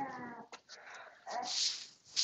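A 9-month-old baby's brief whining vocalization right at the start, followed by soft breathy hissing about halfway through.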